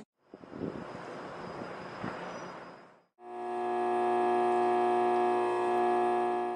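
High-voltage electrical cabinet humming: a steady electrical drone with several even, unchanging overtones that fades in a little after three seconds. Before it there is a faint, even rushing background noise.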